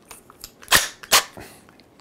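Keyless chuck of a cordless drill being tightened onto a drill bit by hand: a few sharp clicks, the two loudest near the middle.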